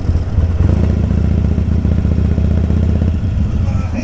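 Harley-Davidson Sportster's air-cooled V-twin running at low speed with a steady low rumble, filling out slightly about half a second in.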